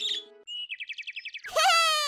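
Cartoon sound effects between songs: a short bird chirp, then a quick high trilling tweet, then a falling, wailing glide starting about halfway through.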